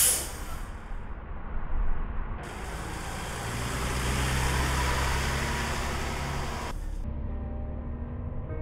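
City transit bus: a brief hiss of air from the brakes at the very start, then the bus engine running with a steady low hum as the bus pulls away and passes close by, loudest in the middle. The sound cuts off sharply about seven seconds in, leaving a low rumble.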